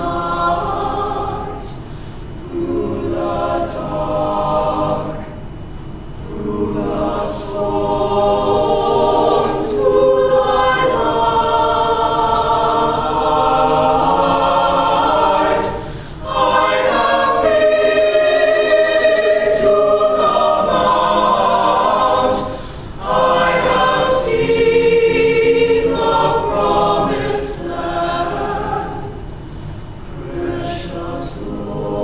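Large mixed choir singing in harmony, sustained phrases with brief breaks between them, two of them past the middle.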